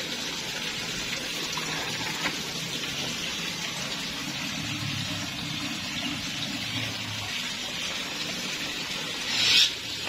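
Steady rush of running water, with a brief louder, hissier swell near the end.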